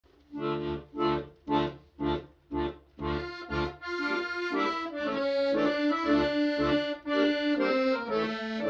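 Piano accordion playing: a run of short, separate chords about twice a second, then from about three seconds in a continuous melody over held chords.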